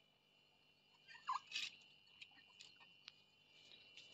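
Near silence: room tone, with a few faint short sounds about a second in, one sliding down in pitch, and a faint click near three seconds.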